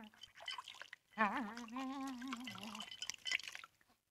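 Water splashing and dripping from a wall-mounted washstand as a man washes his face, with small scattered splashes. About a second in, the man makes a drawn-out voiced sound lasting about a second and a half.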